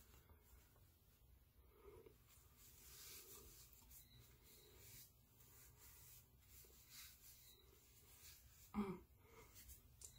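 Near silence: quiet room tone, with one brief faint sound about nine seconds in.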